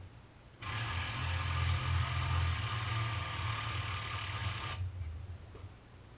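A motor-driven machine runs for about four seconds, starting abruptly shortly after the beginning and cutting off abruptly.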